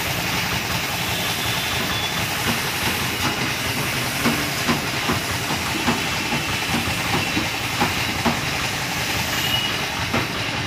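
HVLP paint spray gun hissing steadily as compressed air atomises paint onto a car bumper, with a few faint clicks.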